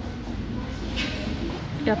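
Steady low background rumble of a large shop, with a short hiss about a second in.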